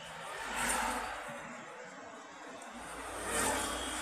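Road and traffic noise heard from inside a moving car, swelling twice: about a second in and again near the end, with a low engine hum underneath.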